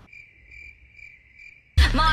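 Cricket chirping: a steady high trill that pulses about twice a second, starting and stopping abruptly between stretches of music, as a dropped-in sound effect would. Loud electronic music cuts in just before the end.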